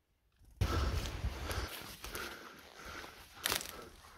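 Near silence for about half a second, then footsteps crunching and rustling through dry leaf litter and twigs on a forest floor, with a heavy low rumble at first and a sharper crackle near the end.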